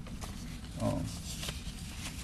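A pause in a speech at a lectern microphone: one short hesitant 'uh' from the man about a second in, over faint rustling and a small click from his hands at the lectern.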